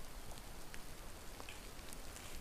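Rain falling in the woods: a steady hiss with a few scattered drop ticks.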